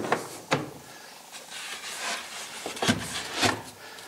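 Ford Explorer's cargo load-floor panels and underfloor storage cover being handled and laid back in place: a couple of sharp knocks near the start, a stretch of rubbing and shuffling, then a few more knocks near the end.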